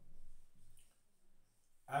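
Whiteboard marker writing on a whiteboard: faint taps and strokes as a word is written. A man's voice starts near the end.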